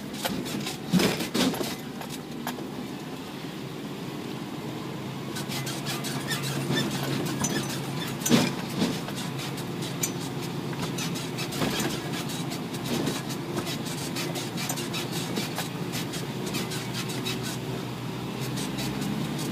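Isuzu NPR 4WD truck driving over a rough dirt track: the engine runs steadily under constant rattling and clattering, with heavier knocks about a second in and again around eight seconds in.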